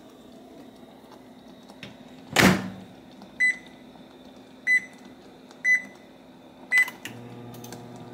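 Microwave oven door shut with a thud, then four short keypad beeps about a second apart as the cook time is entered and started. Near the end the oven starts running with a steady low hum.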